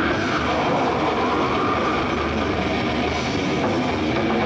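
Thrash metal band playing live: fast, distorted electric guitars, bass and drums in a dense, unbroken wall of sound.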